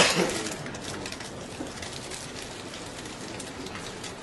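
Felt-tip marker squeaking and tapping in short strokes on a whiteboard as figures are written, over a steady hiss of room noise. A single loud knock comes right at the start and dies away within half a second.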